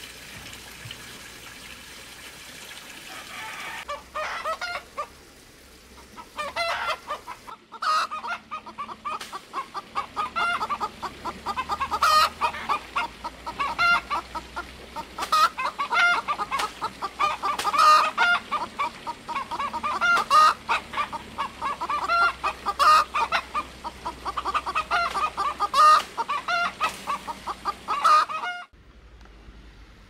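Steady rain hiss for the first few seconds, then chickens clucking continuously, with a sharp knock about every two and a half seconds. It all cuts off abruptly near the end.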